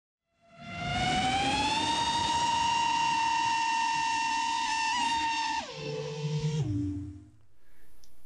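FPV quadcopter's motors and propellers whining as it spools up to a steady high pitch, with a couple of brief blips. Near the end the pitch drops in two steps as the throttle comes off, then it fades out.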